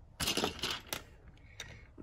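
Plastic Lego bricks rattling as they are handled, then a sharp click about a second in as a brick is pressed onto the plate, and a fainter click later.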